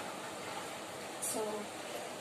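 A steady background hiss, with one short spoken word about a second into it.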